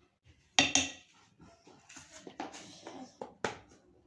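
A metal spoon clinking and tapping against dishes while spices are added, a sharp double clink about half a second in, then a few lighter knocks.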